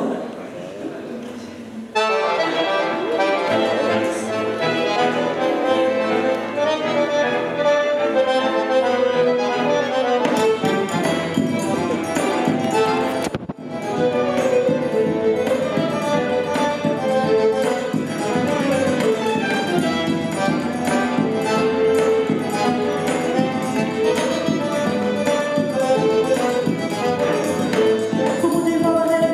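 A forró ensemble of accordion, string quartet, zabumba and triangle starts playing about two seconds in, with the accordion leading over strings and a low drum pulse. The sound drops out briefly about thirteen seconds in, then the music carries on.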